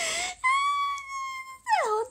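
A young woman's high-pitched, drawn-out wail: a short breathy burst, then one long held note for about a second that slides down in pitch into speech near the end. It is a whiny cry of embarrassment at being teased over her own slips.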